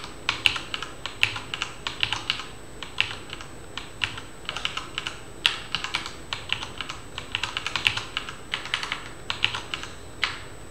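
Computer keyboard typing in irregular bursts of keystrokes with short pauses between them, one key strike about five and a half seconds in louder than the rest.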